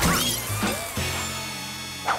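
Cartoon sound effects of lab glassware and plastic cups smashing and clattering as a fly swatter knocks them off a table, with a few crashes in the first second, over background music.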